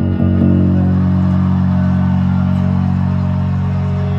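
Electric bass guitar played along with a rock song: a new low note is struck right at the start and then held steadily.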